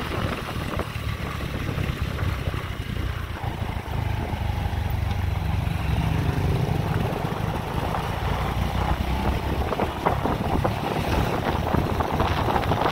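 Motorbike engine running at riding speed, with wind rushing over the microphone; the low engine note grows stronger from about four seconds in.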